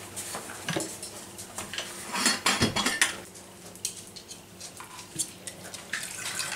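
Clinks and knocks of a glass bottle and its metal screw lid being handled on a stone worktop, with the lid and straw taken off ready for the milk. The knocks come scattered and are busiest about two to three seconds in.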